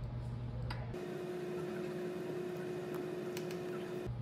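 Faint room tone with a steady low hum and a few faint, light clicks.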